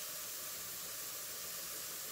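A steady, even hiss with no clicks or crackles in it.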